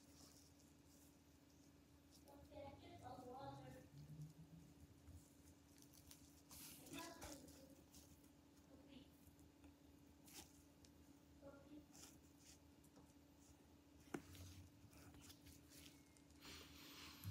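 Near silence: room tone with a steady faint hum, a few faint handling rustles and a couple of soft clicks.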